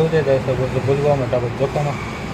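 Speech: a man talking, over steady background noise.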